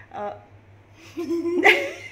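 A person's playful whiny cry: a brief vocal sound, then a drawn-out whine about a second in that breaks into a sharp, high squeal near the end.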